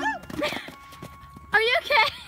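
Hoofbeats of a horse jumping and cantering on a sand arena, with a loud, high-pitched voice calling out in the last half second.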